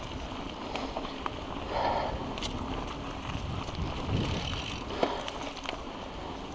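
Mountain bike riding over a dirt trail covered in dry leaves: steady tyre and wind noise, with a few sharp clicks and knocks from the bike.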